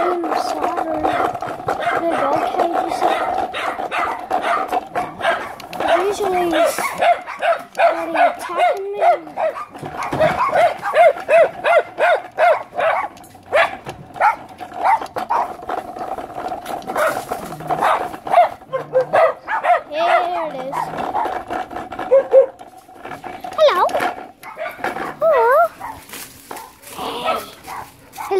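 A dog barking again and again in quick runs of short barks, then a few rising and falling whines near the end.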